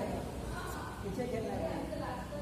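Voices talking indistinctly in the background, no words made out.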